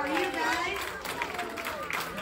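People talking at a party: voices only, with no music in this moment.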